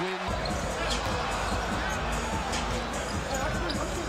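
Basketball arena noise from a game broadcast: a steady crowd murmur with a low rumble and faint voices, with a basketball being dribbled on the hardwood court.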